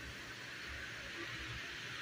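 Faint steady hiss from a gas stove burner, just turned up, under a wok of leaves frying in oil.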